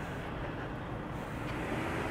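Low, steady street-traffic noise, a little louder toward the end.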